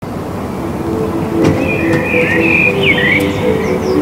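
Outdoor park ambience cutting in suddenly: a steady low background rumble with small birds chirping and twittering, starting about a second and a half in.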